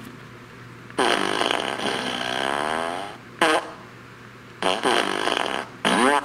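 T.J. Wisemen remote-controlled fart machine speaker playing recorded fart sounds with its boombox housing twisted closed. A long fart of about two seconds starts a second in, followed by three shorter ones. Closing the housing makes no noticeable difference to the sound.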